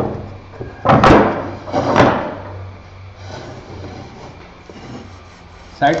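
Two sharp wooden knocks about a second apart, from a pair of dowel-joined, melamine-faced board panels forming a 45° mitred corner being handled and set down on a concrete floor.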